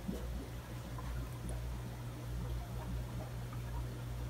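Steady low hum of aquarium equipment, with faint water noise from the tanks' filtration.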